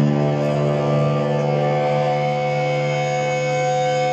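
A distorted electric guitar chord held through an amplifier and left to ring at a steady pitch, its higher overtones swelling as it sustains.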